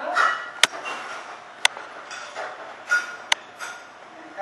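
A series of sharp clicks and knocks from hard objects being handled, three crisp ones standing out at uneven spacing, with short bright sounds in between.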